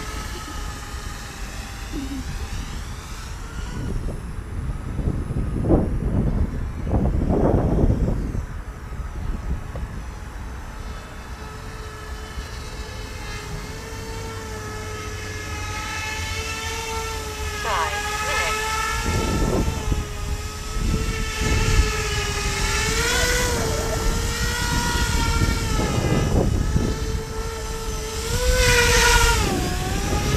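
Z-2 bicopter's two electric rotors whining in flight, a steady pitched hum that wavers up and down as the motors correct against gusts. Wind buffets the microphone in low rumbling bursts, and the whine swells near the end as the bicopter comes close.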